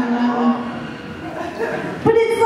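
Comedy-club audience reacting to a punchline with laughter and murmuring. One low, drawn-out voice is held for about the first half second, then the reaction fades.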